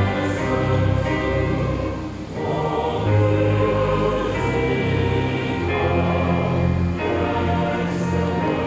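A choir singing a school song in held chords that change every second or two, accompanied by piano and keyboard.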